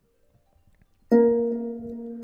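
Synthesized harp tone from the Star Trek Vulcan Harp iPad app: one pitched note starts suddenly about a second in, rings and slowly fades.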